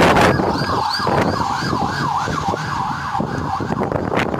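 Police car siren on the fast yelp setting, its pitch rising and falling about three times a second. A short loud rush of noise sounds right at the start.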